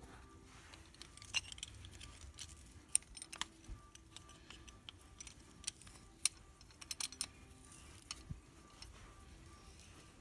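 Scattered light metallic clicks and clinks from a C-clamp being worked against a brake caliper, its screw turned to press the pads and push the caliper piston back in. The clicks are irregular, with a few sharper ones about three and six seconds in.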